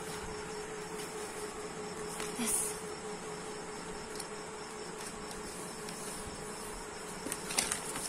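A steady hum holding one tone throughout, with soft crackles of paper being handled and creased near the end.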